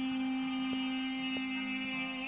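Recorded devotional dance music holding one long, steady note rich in overtones. Two faint taps fall near the middle.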